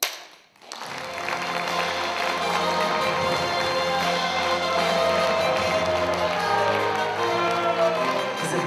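A film clapperboard snapped shut once, a single sharp clack with a short echo, right at the start. Under a second later music starts and plays on loudly and steadily.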